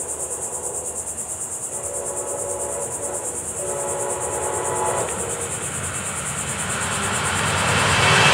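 Insects buzz steadily with a fast high pulse. A train horn sounds two long blasts in the middle, then the rumble of an approaching Brightline passenger train, led by a Siemens Charger diesel-electric locomotive, swells louder toward the end as it reaches the crossing.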